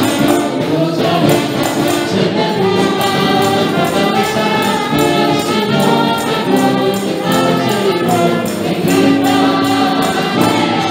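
Live worship music: several women singing together in Spanish over a band, with a steady beat.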